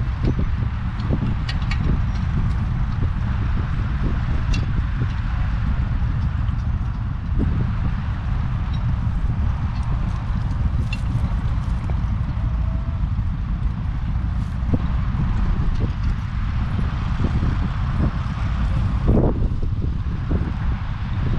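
Wind rumbling steadily on the microphone, with scattered sharp knocks and clinks from a pair of heavy horses standing in harness at a plough.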